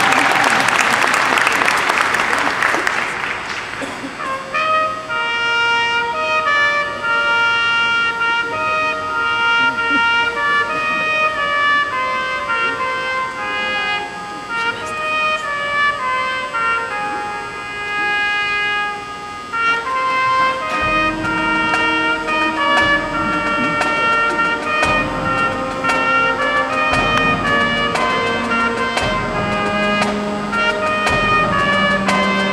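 Crowd applause fades over the first few seconds, then a marching band's horns play slow, held chords. About two-thirds of the way through, deeper low parts join in.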